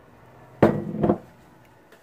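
A kitchen container knocked down onto the countertop: one sharp knock with a short clatter after it.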